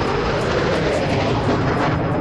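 Steady, loud background rumble and hiss with no speech, like street traffic noise.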